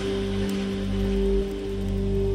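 Ambient electronic music: sustained low synth tones over a soft, pulsing bass, with a steady rain-like hiss layered in.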